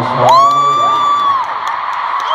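A fan's high-pitched scream that rises, holds for about a second and falls away, over the steady noise of the arena crowd.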